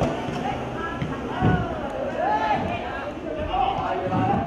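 Shouted calls from players and coaches during a football match, raised voices rising and falling in pitch, the words not made out.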